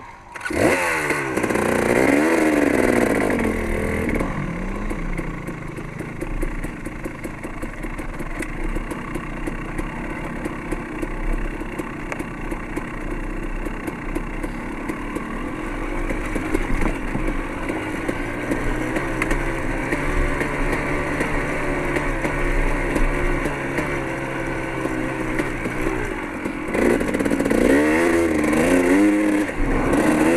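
Dirt bike engine pulling away from a stop with rising and falling revs as it shifts up, then running steadily at trail speed, with wind rumbling on the microphone. Near the end the revs rise and fall again.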